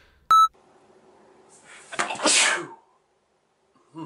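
A short, loud electronic beep, then about a second and a half later a loud, breathy outburst from a person, strongest near its end.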